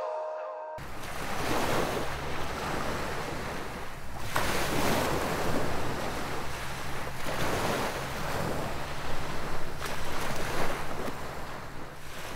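Rushing noise of waves and wind, swelling and easing every second or two over a low rumble. It starts suddenly under a second in, as the tail of the music cuts off.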